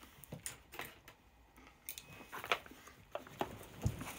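Scattered light clicks and taps of cutlery and a takeaway food container being handled, with a dull thump just before the end.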